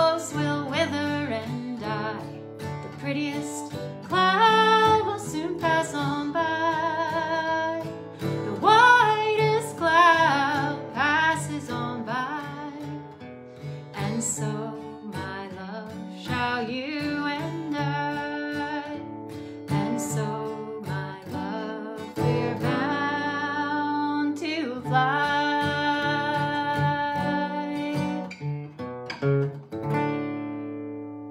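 A woman singing a slow folk song over a strummed steel-string acoustic guitar. The voice comes and goes between guitar passages, and the last chord is left ringing near the end.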